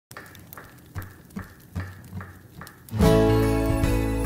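Acoustic guitar intro: soft, regular taps about two and a half times a second, then about three seconds in a full chord is struck and rings out loudly.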